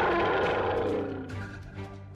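Roar sound effect for animated Kong, already under way and fading out a little after a second in, over background music.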